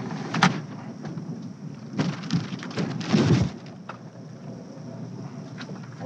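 Rumbling noise inside a car as it sets off, with a sharp knock about half a second in and a louder stretch of rumble and thumps around two to three seconds in.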